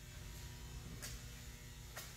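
Quiet room tone with a faint steady electrical hum, and a faint click about halfway through.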